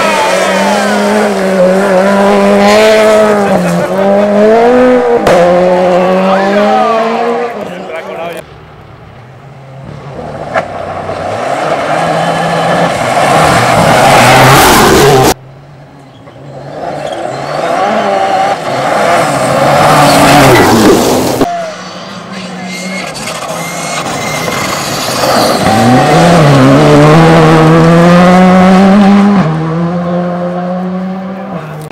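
Rally cars at full throttle on a gravel stage, engines revving up and dropping in pitch through gear changes, with gravel spraying from the tyres. Several passes follow one another, each breaking off abruptly about 8, 15 and 21 seconds in.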